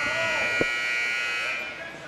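Gym scoreboard buzzer sounding one long steady blast that cuts off about a second and a half in, signalling the start of the second quarter. A single sharp knock is heard partway through.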